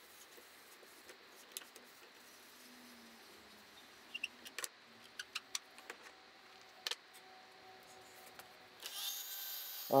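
A few sharp clicks over a quiet background, then, near the end, the electric motor of a mitre saw starts and runs with a steady high whine.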